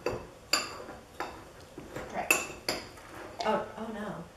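Metal fork clinking against a ceramic bowl while stirring and mashing brown sugar and cinnamon, in a handful of sharp, irregular clinks.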